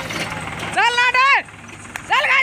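Diesel engines of a farm tractor and a tracked excavator idling steadily, with a person's loud, high-pitched shout about a second in, lasting about half a second.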